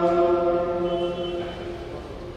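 Liturgical chant in a church: one voice holding a long, steady sung note that fades out about three-quarters of the way through.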